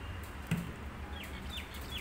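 A single knock of a knife against a steel plate while a mango is being cut, then three short chirps from a bird, each falling quickly in pitch, over a low steady hum.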